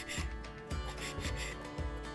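A tiny kitchen knife chopping lettuce on a miniature wooden cutting board: several short scraping cuts, over background music with a steady beat.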